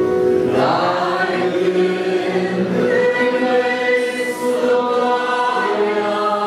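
A congregation singing a hymn together in many voices, with an accordion playing along in held chords.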